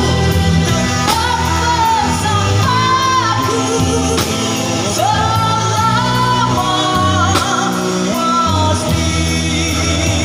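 Live rock band playing a song: electric bass guitar and drum kit under a voice singing the melody, with regular cymbal and drum hits.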